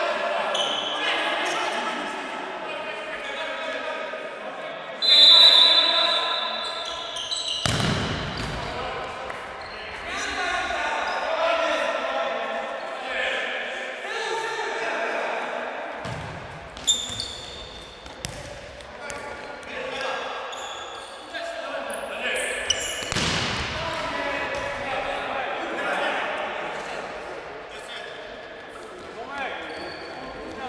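Indoor futsal game: the ball being kicked and bouncing on the hall floor and players calling out, all echoing in a large sports hall. The loudest moment is a sharp burst about five seconds in.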